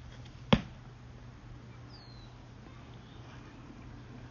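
A single sharp click about half a second in, the loudest thing here, over a steady low hum; a faint short falling whistle follows around two seconds in.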